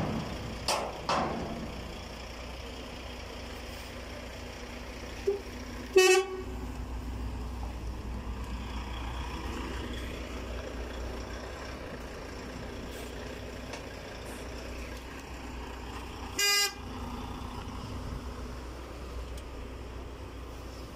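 Two short vehicle-horn toots, one about six seconds in and one about ten seconds later, over a steady low engine rumble.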